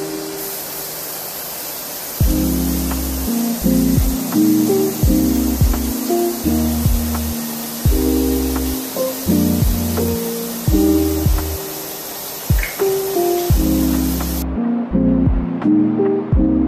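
Shower spray hissing steadily, cutting off abruptly about 14 seconds in, under background music with a bass line and plucked chords.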